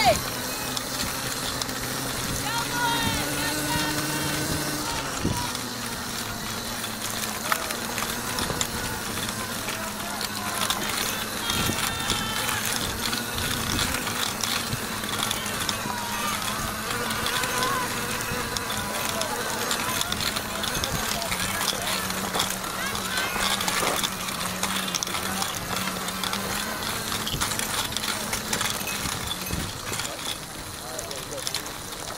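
Outdoor ambience with scattered, distant spectator voices and a steady low hum underneath.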